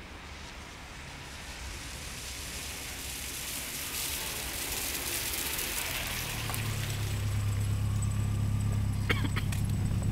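A car's running sound growing steadily louder: a rising hiss of road noise, joined about six seconds in by a steady low engine hum, with a few faint clicks near the end.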